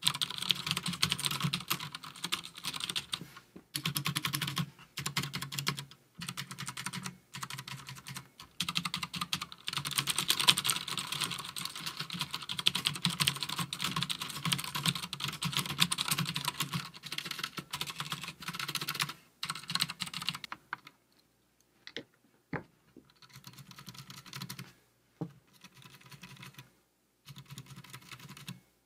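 Cherry MX Blue clicky mechanical switches on a Das Keyboard 4 Professional, typed on rapidly as a dense run of loud clicks with brief pauses. About three quarters of the way in, the typing thins out to a few separate key presses.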